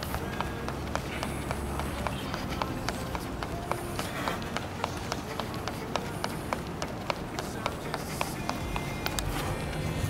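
Sneakers striking a hard outdoor sports court in a quick, steady run of footfalls as a man does high-knee raises in place.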